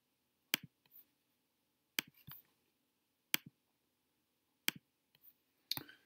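Computer mouse clicking: about five sharp single clicks spaced a second or so apart, with faint room tone between.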